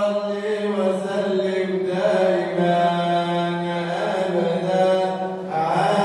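A man's voice chanting Arabic Sufi madih, praise poetry for the Prophet, into a microphone, without drums. He holds long notes that glide slowly from pitch to pitch, with a change of note about two seconds in and again near the end.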